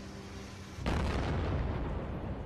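A bomb blast: a sudden loud explosion about a second in, followed by a long, noisy rumble that dies away slowly. It stands for a bomb going off on a commuter train.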